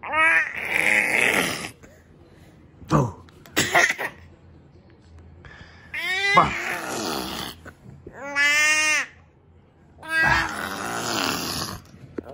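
A baby laughing and squealing in about five short, breathy bursts with short pauses between them.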